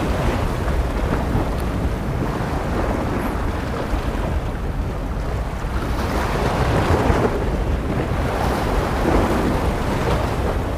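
Wind buffeting the microphone over the wash of sea waves on a rocky shore, the surf swelling louder about six seconds in.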